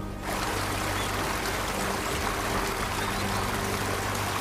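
Background music of sustained low tones under a steady rushing noise like running water, which fades in just after the narration stops.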